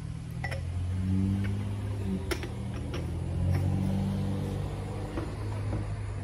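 Low hum of a vehicle engine running nearby, swelling about a second in and again near four seconds. A few light clicks and rustles come from small parts and packaging being handled.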